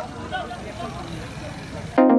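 Several men's voices calling out over steady, rumbling background noise.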